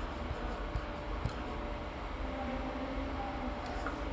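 Steady background hiss and low hum of room tone, with a few faint clicks in the first second or so.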